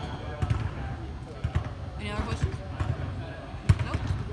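Basketballs bouncing on an arena floor, several dribbles at uneven spacing, as if more than one ball is in play, with background voices partway through.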